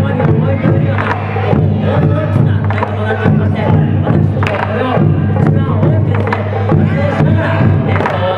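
Japanese taiko ensemble playing: large nagado-daiko barrel drums struck with wooden bachi in a loud, continuous run of strikes, with a voice shouting calls over a microphone and crowd noise behind.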